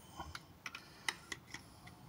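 A scattering of faint, irregular small clicks and ticks from the hard plastic parts of a Baiwei TW-1103 Jetfire transforming figure as they are handled and their jointed parts adjusted.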